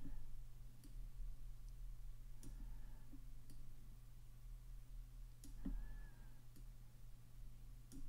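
Faint computer mouse clicks, about eight at irregular intervals, over a low steady hum.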